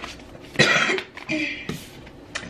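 A woman coughing: one loud cough about half a second in, then a smaller cough or throat-clear, with a brief rustle of tarot cards being handled near the end.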